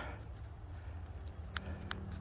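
Faint outdoor ambience: a steady high insect trill over a low rumble, with two small ticks near the end.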